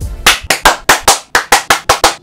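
A fast run of sharp, loud hand claps, about six or seven a second. This is the sync clap, the marker that lines up separately recorded audio with the camera's video.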